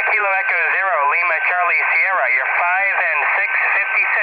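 A distant amateur station's voice received on single sideband through the speaker of a Yaesu FT-817ND portable transceiver on 20 meters, thin and telephone-like over band static, with a steady whistle running under it.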